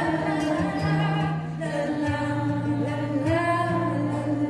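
Live music: a woman singing a slow ballad with acoustic guitar accompaniment, the audience singing along as a choir. The notes are long and held, with a few slides between pitches.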